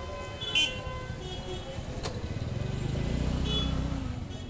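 Street traffic with a motor vehicle's engine rumble growing louder and passing close in the second half. A brief loud knock about half a second in and a sharp click around two seconds.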